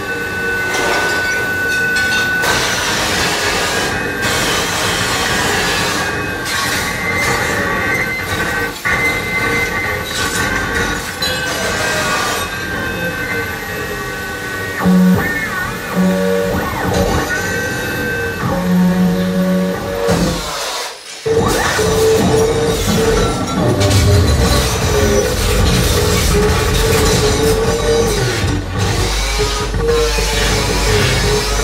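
Live harsh-noise performance built on an iron plate being attacked with a corded tool: dense metallic screeching with held and sliding squealing tones over a constant noise. It drops out for a moment about two-thirds of the way through, then comes back with a heavy low rumble underneath.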